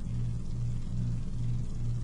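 A steady low hum that swells and dips slightly about two to three times a second, with faint background noise above it.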